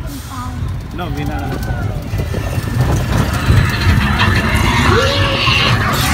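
Roller coaster train running along its track, a steady low rumble that grows louder, with rushing wind on the microphone in the second half and riders' voices and shouts over it.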